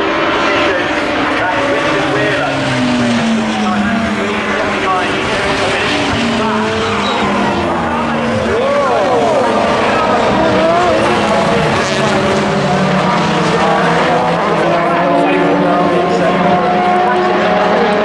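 A pack of Super Touring race cars passing at racing speed, several engines heard at once, their pitches rising and falling through gear changes and as they go by.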